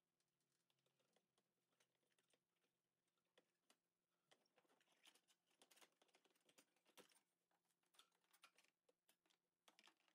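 Near silence, with faint scattered clicks and taps from about four seconds in, from hands working at the interior trim and the brake hard line on the floor pan.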